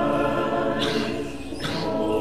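Orthodox church choir singing unaccompanied in held chords. A little after the middle the chord thins and dips briefly, with two short hisses on either side of the gap before the next phrase comes in.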